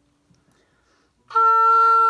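Oboe playing a single steady held B-flat, starting just over a second in after a brief silence.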